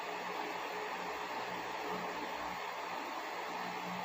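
Electric fan running steadily: an even airy noise with a faint low hum.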